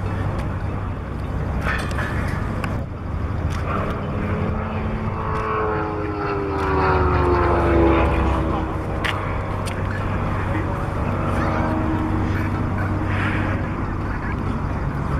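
Pipistrel Virus light aircraft's piston engine and propeller in a low fly-by, the engine note dropping in pitch as it passes, loudest about eight seconds in.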